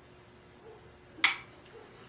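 Quiet room tone with one short, sharp breath about a second in, taken just after a swallow of beer.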